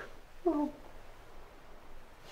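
A woman's short, high-pitched sob about half a second in: a brief crying whimper that falls slightly in pitch.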